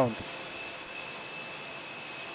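Steady airport apron noise: an unbroken jet-turbine hiss with a thin, high whine held at one pitch.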